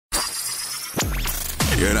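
Produced intro sound effects over music: a crashing, shattering noise with a high rising whistle, then a sharp hit about a second in whose pitch swoops down into a deep boom. A voice-over begins right at the end.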